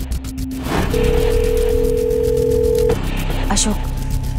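A single steady telephone tone on a mobile phone line, held for about two seconds: a ringback tone as a call rings through. Background music with a pulsing beat runs under it.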